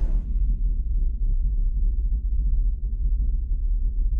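Deep, steady low rumble from an animated logo intro sting: the bass tail left after its explosion hit, with nothing higher in pitch above it.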